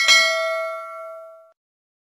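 Notification-bell sound effect: a single bell ding as the bell icon is clicked, ringing out and fading away within about a second and a half.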